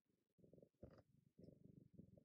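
Domestic cat purring faintly close to the microphone, the purr swelling and easing about twice a second with its breathing. There is a brief sharper sound just before the one-second mark.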